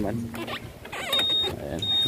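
Two short, high-pitched electronic beeps, about a second in and again near the end, over brief voice and handling noise.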